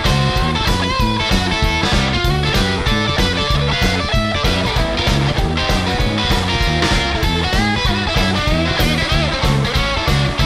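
A rockabilly trio playing live in an instrumental passage: an upright double bass keeping a steady, even beat under an electric guitar picking a lead line, with drums.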